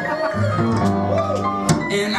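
Upright double bass plucked in sustained low notes, with a voice singing a wavering melody over it; a sharp click near the end.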